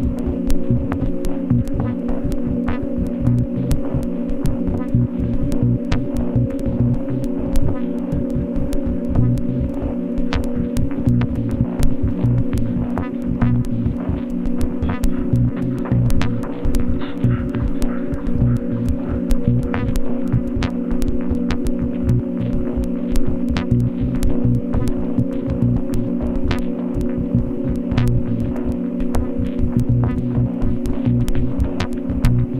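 Glitch-dub ambient electronic music: a steady drone of stacked low tones over a pulsing bass throb, sprinkled with fine clicks.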